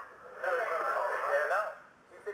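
A crowd of mission-control staff cheering and shouting in celebration, many voices overlapping, heard thin as through a narrow broadcast feed. It swells about half a second in and fades near the end.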